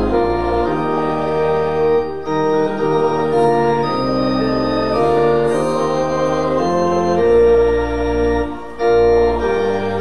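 Church organ playing a hymn: sustained chords that change about once a second, with short breaks between phrases about two seconds in and again near the end.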